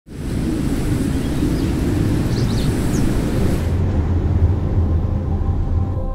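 Wind ambience: a steady rush of wind over a deep low rumble. Its upper hiss drops away a little past halfway. A few faint, short high chirps sound near the middle.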